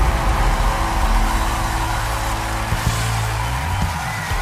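Studio audience cheering and applauding over the band's held closing chords.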